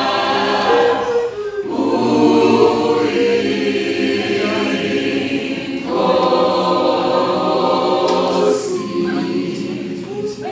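A high school choir of boys and girls singing unaccompanied, holding chords in sustained phrases with short breaks about two seconds in and again around six seconds.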